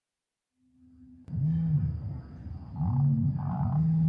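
Dinosaur-exhibit sound effects: deep animal-like calls, repeated several times and rising and falling in pitch, starting suddenly about a second in.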